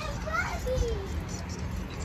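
A young child's voice, faint and high, in a few short gliding sounds during the first second, over a steady low outdoor rumble.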